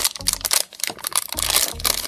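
Shiny plastic blind bag crinkling and crackling in irregular bursts as it is pulled and torn open by hand.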